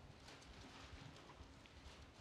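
Near silence, with faint rustling and soft taps of Bible pages being turned by hand.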